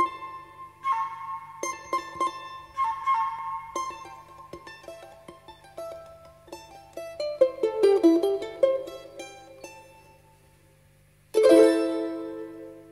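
Background music played on a plucked-string instrument: single ringing notes that die away, a falling run of notes in the middle, a quiet fade about ten seconds in, then a loud chord struck near the end.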